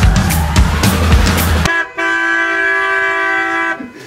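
Dance music with a heavy beat cuts off suddenly, and then comes one long, steady horn blast lasting about two seconds.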